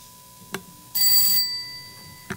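A short electric bell ring about a second in, lasting about half a second with a high tone that fades after it, preceded by a single click.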